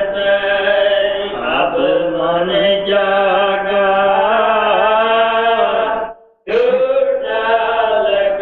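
A devotional verse chanted in long, held, gliding notes. The sound cuts out completely for a moment about six seconds in.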